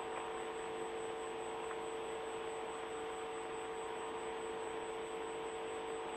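Steady hiss with a constant electrical hum from an open radio communications channel between transmissions, unchanging throughout.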